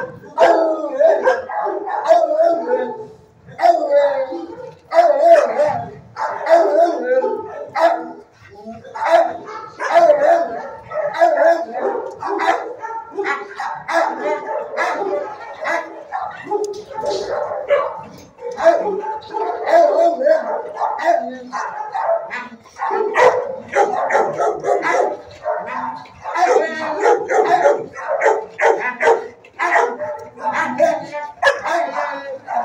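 Shelter dogs in their kennels barking, yipping and howling, the calls overlapping almost without a pause.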